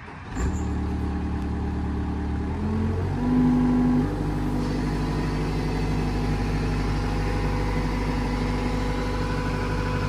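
Gehl R260 skid steer's diesel engine starting about half a second in and running. Its speed rises just under three seconds in, is loudest for about a second, then holds steady while the machine works.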